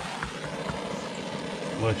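Small propane torch on a hose from a propane cylinder, its flame hissing steadily as it burns a hole through woven plastic weed-barrier fabric. A man's voice starts near the end.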